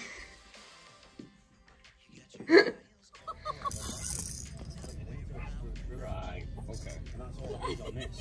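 A baby's single short, loud squeal. After it comes a steady low rumble of wind on the microphone, with soft baby sounds and voices.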